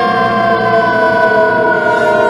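A long sustained tone rich in overtones, sliding slowly and steadily down in pitch: an added electronic music or sound-effect note, not a real siren.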